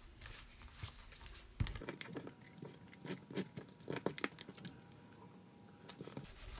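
Cardstock pieces being handled and laid onto a card base: faint paper rustling with scattered light taps and clicks as the panels are picked up, shifted and pressed down.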